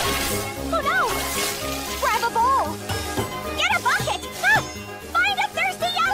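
Cartoon background music with a bouncy bass line, with the hiss of water spraying from leaking pipes in the first couple of seconds. Short, wordless, rising-and-falling cries from a cartoon character come over it.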